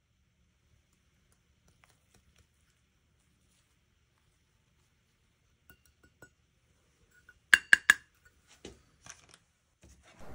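A stainless steel measuring cup clinking against a ceramic bowl as powder is tipped out. There are a few light clicks, then a quick cluster of sharp, ringing clinks a little past the middle, and a few softer taps after it. The first half is near silence.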